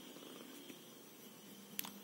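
Faint pen on paper: soft scratching of a pen writing a short symbol over low room hum, with one small click near the end.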